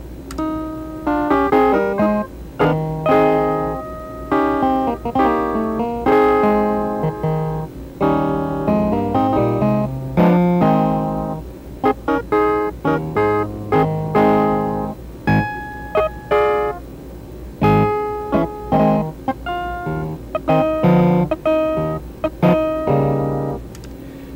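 Synthesizer played back by computer, reproducing a recorded keyboard performance keystroke for keystroke after sections were spliced in and cut out. It plays a run of chords and quick notes with short breaks, stopping just before the end.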